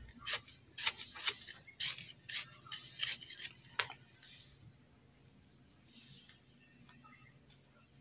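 A wooden stick scraping and scratching through dry rice hulls and soil in short, repeated strokes. About halfway through it thins to quieter rustling.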